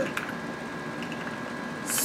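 Quiet room tone: a steady background hiss with a faint thin high tone, and a couple of soft clicks just after the start.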